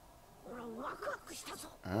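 Speech only: Japanese anime dialogue, Goku's line, at low volume, ending with a short voiced "ah".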